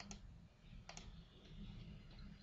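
Faint computer mouse clicks: two quick clicks at the start and two more about a second in, over a low steady hum.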